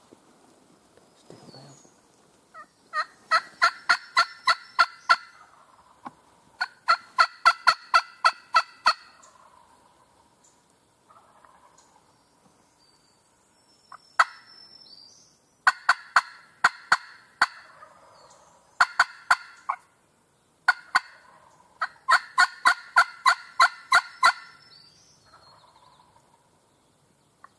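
Several loud runs of turkey yelps, evenly paced at about five notes a second, each run lasting one to two seconds with short pauses between.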